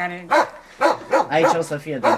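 Speech: a voice talking in short phrases that the transcript does not make out.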